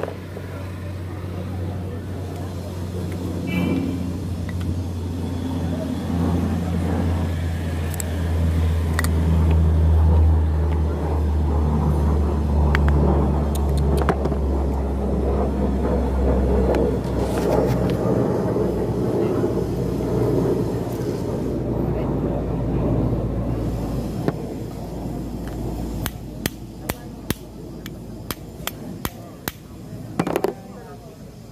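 A motor vehicle engine running, a low rumble that swells over the first ten seconds and fades away after about twenty-four. Near the end, a quick run of sharp clicks.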